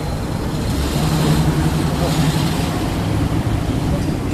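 Street traffic: a motor vehicle's engine hum comes up about a second in and fades out near the three-second mark, over general road noise.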